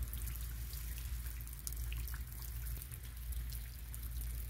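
Rain falling steadily during a thunderstorm, with scattered drops ticking close by over a steady low noise.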